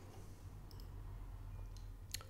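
A few faint, sharp clicks of a computer mouse button over a low steady hum.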